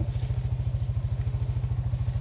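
An engine idling steadily, with an even low throb.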